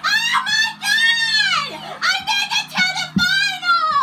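A child's very high-pitched voice squealing and wailing without words, in a run of cries that rise and fall in pitch.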